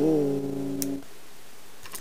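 Guitar: a note or chord is picked with a click, rings for about a second, then is cut off abruptly. Faint hiss follows, with a small click.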